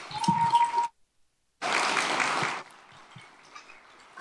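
Audience applause after a talk, with a steady high tone over it for the first second. The sound drops out completely for under a second, comes back, and stops about two and a half seconds in, leaving faint room noise.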